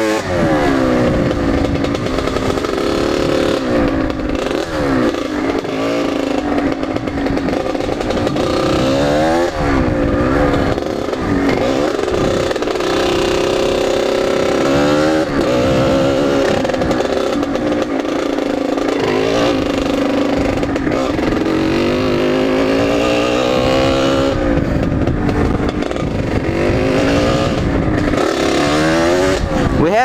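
Kawasaki KX80 two-stroke dirt bike engine under way, its pitch climbing and falling back again and again as the throttle is opened and closed.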